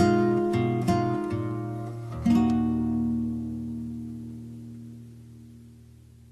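Music only: an acoustic guitar plays the closing plucked notes of a song, with a final chord struck about two seconds in that rings on and fades away.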